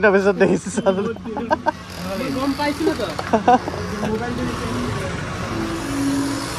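Men's voices talking for about two seconds, then an even background hiss with scattered bits of speech.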